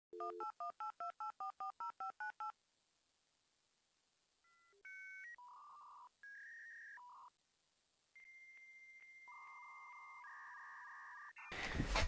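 Electronic telephone keypad dialing tones: about a dozen quick two-note beeps in the first two and a half seconds. Then come a few separate tone blips and, from about eight seconds in, longer steady tones like a dial-up modem connecting.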